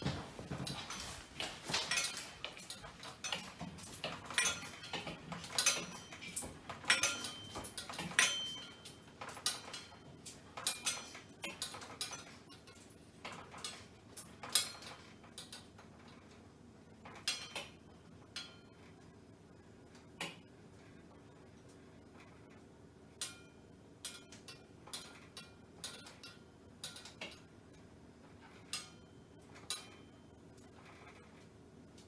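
Dishes in an overhead drying rack and hanging kitchen utensils clinking and rattling as an earthquake shakes the room. The clatter is dense for the first dozen seconds, then thins to single clinks every second or two as the shaking eases.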